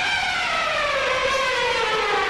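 A long, siren-like tone with several overtones, gliding slowly and steadily downward in pitch, like a winding-down sound effect.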